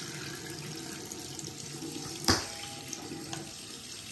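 Bathroom sink tap running steadily while a face is washed and rinsed under it, with one sharp knock a little past halfway.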